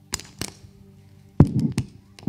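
Clunks and knocks of a plastic water bottle and notes being set down on a wooden high table, picked up close by a handheld microphone: two sharp clicks near the start, then a loud thump with a quick clatter of knocks about one and a half seconds in.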